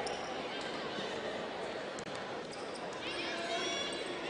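A basketball being dribbled on a hardwood court over steady arena crowd noise, with a few high squeaks near the end.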